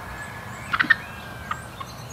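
Wild turkey calling in the field: a quick run of short sharp notes a little under a second in, then one more short note about half a second later.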